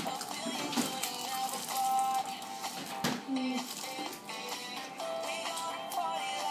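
Background pop music, a melody of held notes, playing in the room.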